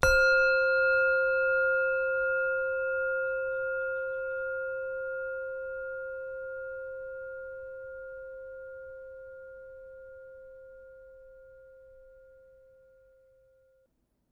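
A singing bowl struck once, ringing with several steady overtones and fading slowly away over about fourteen seconds.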